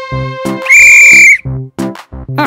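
A referee's whistle blown once, a loud steady high-pitched blast of about two thirds of a second starting roughly three quarters of a second in, over upbeat cartoon music with a steady beat.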